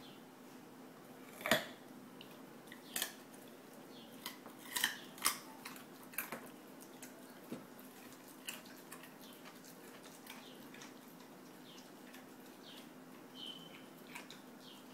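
Two Old English Sheepdogs chewing raw carrot pieces: a scattering of sharp, irregular crunches, the loudest about one and a half seconds in and several more in the following few seconds, over a steady low hum.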